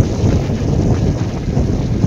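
Wind buffeting the microphone: a loud, steady low rumble with no other distinct sound.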